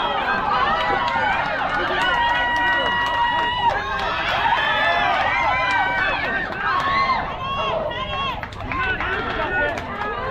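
Many children's high voices shouting and cheering together, overlapping so that no words come through. About two seconds in, one voice holds a long call for a second and a half.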